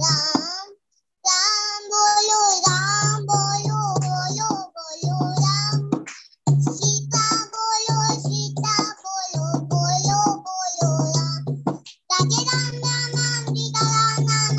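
A young girl singing a Hindu devotional bhajan over a steady low pulsing beat, with harmonium accompaniment, heard through a video call. The sound cuts out briefly about a second in and again twice later.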